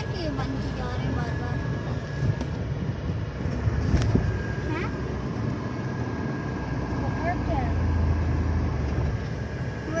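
Car cabin sound at low speed: a low engine and road rumble heard from inside the car as it rolls slowly toward a toll booth, with a faint steady high tone running through it and a short click about four seconds in.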